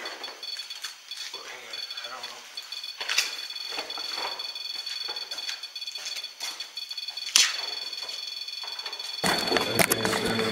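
A REM-Pod ghost-hunting sensor going off, sounding steady high-pitched electronic tones, its alarm for a disturbance in the field around its antenna. Faint voices underneath, and two sharp clicks about three and seven seconds in.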